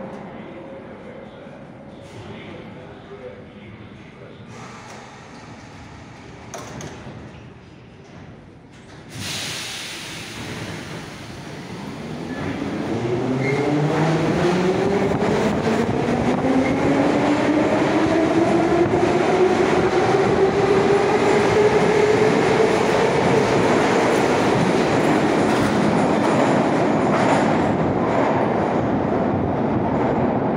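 81-717.5P metro train pulling out of the station. About nine seconds in there is a sudden burst of noise; then the motor whine rises in pitch as the train accelerates, levelling off into a loud, steady running noise in the last several seconds.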